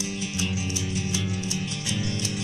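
Instrumental passage of a 1985 psychedelic folk song by a seven-piece band, between sung lines: guitar over sustained low notes, with a steady ticking beat of about three strokes a second.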